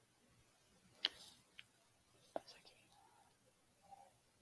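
Near silence with a few faint, short clicks: one about a second in, a weaker one just after, and another about two and a half seconds in.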